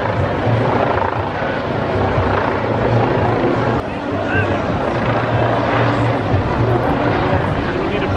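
Crowd of protesters talking in a busy street, with a steady low hum underneath that fades in and out.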